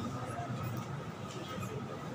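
A faint, indistinct voice over a steady high-pitched hum.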